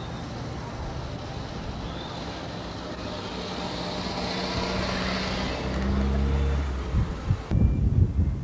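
A vehicle engine running with a steady low hum that grows louder through the middle. Near the end the sound changes abruptly to wind buffeting the microphone.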